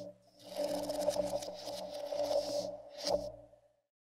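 Intro sound design for an animated logo: a scratchy, textured swell over a few steady held tones. It peaks in a sharp hit about three seconds in, then fades out shortly before the end.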